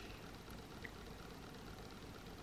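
Quiet room tone with a couple of faint ticks.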